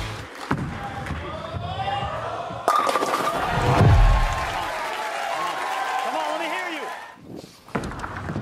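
Bowling ball crashing into the pins about two and a half seconds in, the pins clattering for over a second, over the voices of a crowd.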